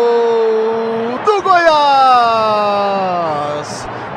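Radio football commentator's drawn-out goal cry, "gooool", held as one long shouted note. About a second in it breaks and starts again as a second long held shout that slides slowly down in pitch and fades.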